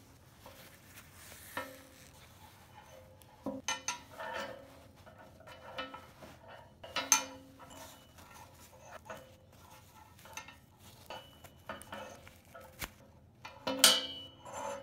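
Handling noise as a doll is taken out of its dress: soft cloth rustling with several sharp clicks and knocks that ring briefly, the loudest a few seconds in and near the end.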